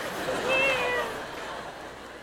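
A man imitating a cat's meow: one drawn-out meow about half a second in, holding its pitch and then sliding down slightly.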